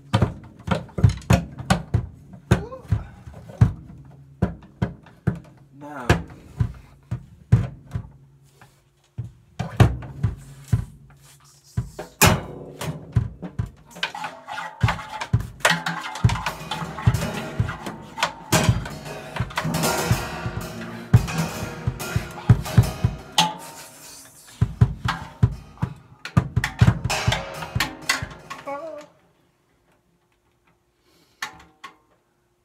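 Drum kit being played: quick strikes on the drums, with cymbals ringing and washing through the middle stretch. The playing stops about a second before the end.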